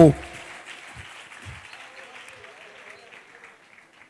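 Congregation applauding with a few voices mixed in, faint and dying away over about three seconds.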